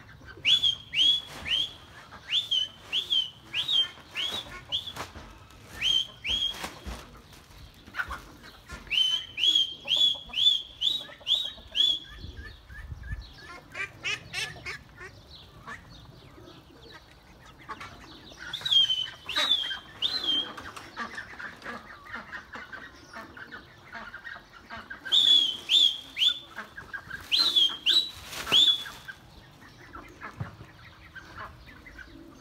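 A bird calling in runs of short, high notes that each slide downward, about two a second, in four bursts with pauses between them.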